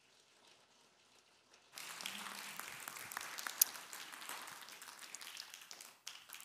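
A small congregation applauding. It starts about two seconds in and thins out near the end.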